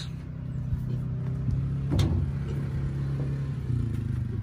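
A steady low mechanical hum, like a motor or engine running, with one sharp click about halfway through.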